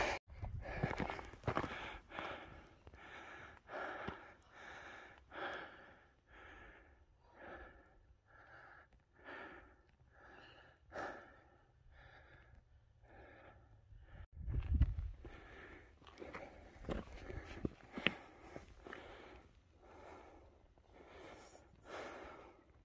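A person breathing hard and evenly, about one and a half breaths a second, winded from a steep climb. A few low gusts of wind buffet the microphone in the second half.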